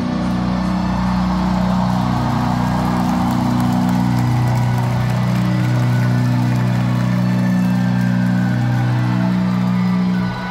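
Live rock band holding long sustained chords at the close of a song, the low notes shifting pitch a few times while they ring out.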